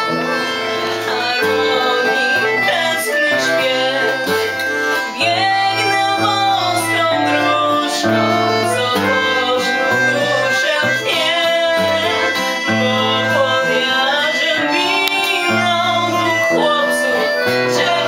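Women singing a song together with acoustic guitar accompaniment, with steady held bass notes under the melody.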